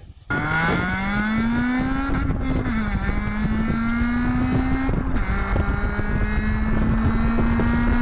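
Honda Civic Type R FN2's 2.0-litre four-cylinder i-VTEC engine accelerating hard, its pitch climbing steadily. The pitch drops at two upshifts, about two and a half and five seconds in, and climbs again after each. It starts suddenly just after the start.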